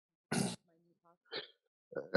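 A person clearing their throat once, sharply, about a third of a second in, followed by a softer, shorter sound about a second later.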